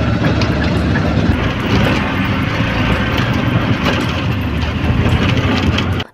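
Steady loud rumble of a moving auto-rickshaw on the road, cutting off suddenly at the end.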